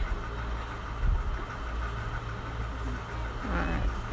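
A motor humming steadily at a low pitch, with one thump about a second in.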